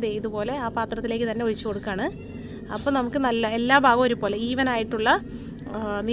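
A woman's voice speaking, over a steady high hiss.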